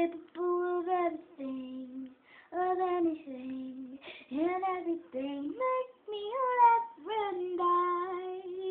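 A young female voice singing unaccompanied: short melodic phrases of held notes that bend up and down, broken by brief pauses for breath.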